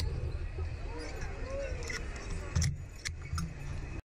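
Wind buffeting the microphone of a camera mounted on a Slingshot reverse-bungee ride capsule as it flies and swings after launch, with faint shouts from the riders. Sharp clanks sound about two and a half and three seconds in, the loudest at the first.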